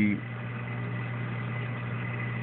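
Steady low electrical hum of running aquarium equipment such as a pump, with a faint thin high tone and light hiss over it.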